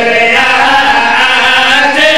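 A man chanting a verse in a drawn-out, sung style, holding long notes that waver slightly in pitch.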